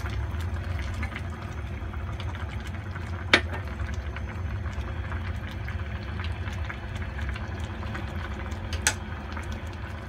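Broth simmering and bubbling in a pot as cornstarch slurry is stirred in to thicken the sauce, over a steady low hum. Two sharp clicks stand out, about three seconds in and near the end.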